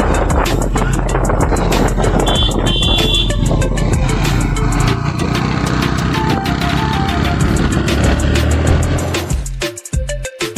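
Motorcycle riding noise, with wind on the handlebar-mounted microphone and the engine running, under background music. About nine and a half seconds in, the riding noise drops out and the music goes on alone.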